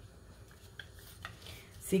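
A few faint clicks of a metal hand-held lime squeezer being handled as a lime half is set into it.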